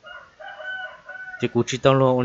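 A rooster crowing faintly in a few joined segments, followed about a second and a half in by a voice starting to talk loudly.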